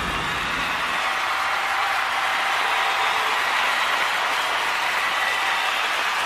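A large audience applauding, a steady wash of clapping, as the song's music dies away in the first second.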